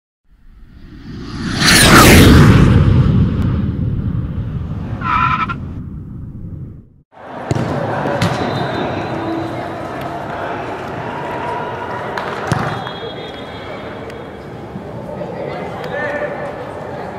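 A swelling whoosh effect over an animated title, falling in pitch, with a short chime-like note about five seconds in. The sound cuts off just before seven seconds and is followed by the noise of an indoor youth soccer game: players and spectators calling out, echoing in a large hall, with one sharp knock later on.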